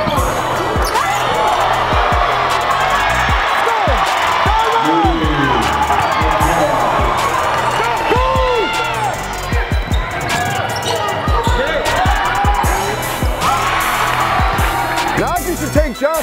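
Basketball game sound in a gymnasium: crowd and bench shouting and cheering, sneakers squeaking in short chirps on the hardwood, and the ball bouncing.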